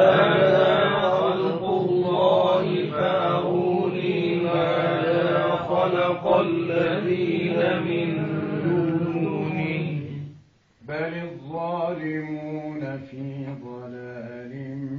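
A man's voice reciting the Quran in the melodic tajweed style. He holds one long drawn-out phrase whose pitch rises and falls for about ten seconds, pauses briefly for breath, then starts the next phrase.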